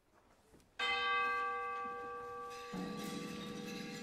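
A single struck bell note in an orchestra rings out just under a second in and slowly dies away. About two seconds later a lower held note joins underneath.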